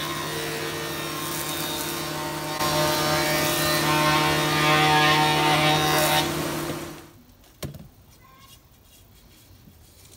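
Sliding-table panel saw running with a steady motor hum while its blade cuts an angle along a narrow wooden strip; the cutting noise gets louder for about three seconds midway. The saw sound drops away about seven seconds in, followed by a single knock.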